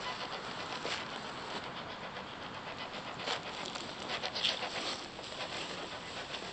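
Spirit box (ghost box) radio sweeping through stations: a steady hiss of static broken by rapid faint ticks, with a couple of brief louder bursts a little past the middle.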